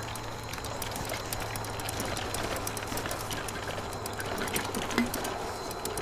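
Riding noise of an electric trike on a rough trail surface: a steady rolling hiss with a faint low hum and scattered small clicks and ticks, one a little sharper about five seconds in.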